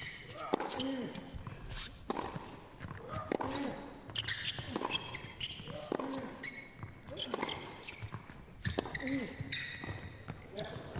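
Tennis rally on an indoor hard court: a string of sharp racket-on-ball strikes and ball bounces less than a second apart, with short squeaks of shoes on the court surface between them.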